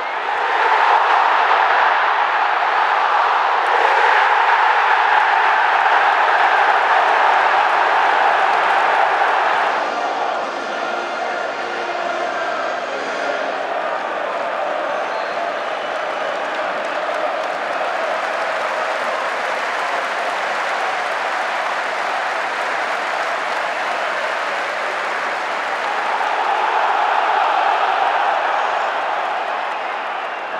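Football stadium crowd noise from the stands, a steady din of many voices and clapping. It is louder for about the first ten seconds, eases off, and swells again near the end.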